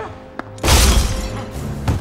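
Movie sound effect of a man crashing down onto a car's hood, the windshield cracking under him: one loud crash about two-thirds of a second in that dies away over half a second, over a film score.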